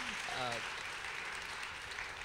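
Audience applauding, dying away toward the end, with a brief voice sound about half a second in.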